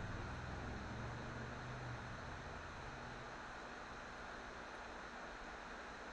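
Faint, steady background hiss of room tone, with a low hum that fades out a little past halfway.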